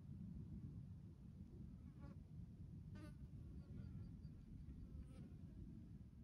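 Near silence outdoors: a faint, steady low rumble of wind on the microphone, with a few faint short bird calls, including a quick run of small high notes around the middle.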